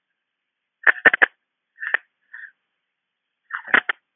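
A few short, sharp clicks in two clusters, about a second in and again near the end, with a couple of soft brief puffs of noise between them.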